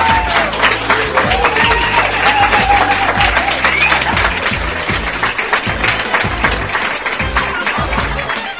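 An audience applauding and cheering over background music.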